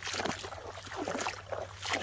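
Wading footsteps through shallow water in a flooded rice paddy: irregular splashes and sloshes, with the rice plants swishing against the legs.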